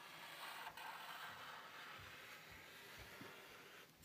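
Near silence, with the faint scratch of a Sharpie marker drawing on paper and a few soft low bumps.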